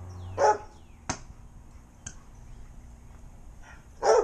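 A dog barks once, about half a second in, impatient for its ball to be thrown; two sharp clicks follow at about one and two seconds.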